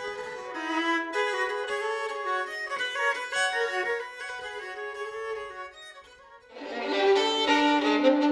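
Solo violin playing a slow melody. It dies down about five to six seconds in, then comes back louder and fuller on lower notes about six and a half seconds in.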